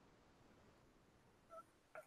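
Near silence: faint room tone on an open microphone, with one very faint, brief tone about one and a half seconds in.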